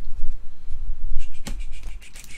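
Hands handling trading cards and foil card packs on a tabletop: rustling and low handling bumps, with one sharp tap about one and a half seconds in.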